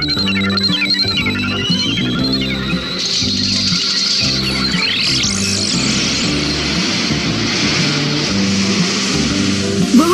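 Cartoon background music with a steady low pattern, laid over sound effects for a typhoon springing up: rising whistling glides over the first few seconds, another quick upward sweep about five seconds in, and a steady rushing, wind-like hiss from about three seconds in.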